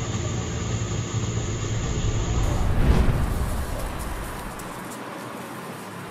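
Street traffic: a steady low rumble that swells about halfway through as a vehicle passes, then fades away.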